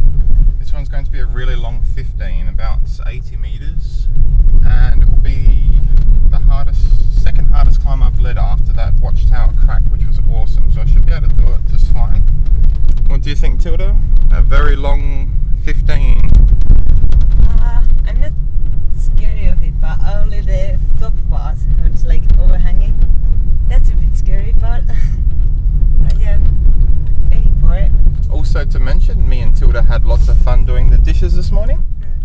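Steady low rumble of a moving car heard from inside the cabin: tyre and engine noise while driving.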